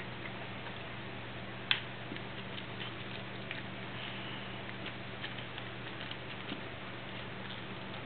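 Small clicks and crackles of a soft plastic mold being flexed and peeled off a soft resin casting, with one sharper click a little under two seconds in, over a steady low hum.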